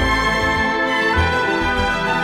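Background music: sustained chords over a moving bass line.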